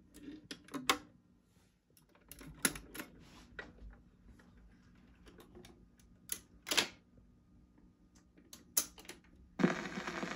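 Sharp mechanical clicks and clunks of a V-M 1288 four-speed mono record changer as its tonearm is set and the mechanism cycles, the 45 dropping from the spindle, under a steady low hum. Near the end the stylus sets down and the record starts playing.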